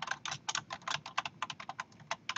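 Typing on a computer keyboard: a quick, uneven run of keystroke clicks as a word is typed.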